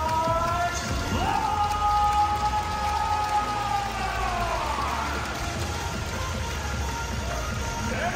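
Arena player introduction: a public-address announcer's long, drawn-out call of a player's name, held for several seconds and then sliding down in pitch, over loud music and steady crowd noise.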